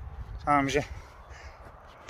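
A single caw from a crow, about half a second in, lasting under half a second.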